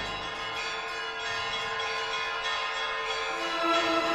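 Bells pealing: many overlapping ringing tones, with fresh strokes every second or so. A low held note enters about three seconds in.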